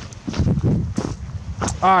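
Footsteps of a person in boots walking over dead grass and ice: a run of short, irregular steps.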